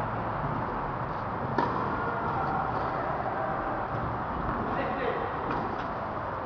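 Tennis ball struck by rackets on a clay court: a sharp serve hit about a second and a half in, then fainter return hits at roughly one-second intervals, over a steady background hum.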